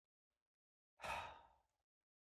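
Near silence, then about a second in a man's short, breathy sigh lasting about half a second.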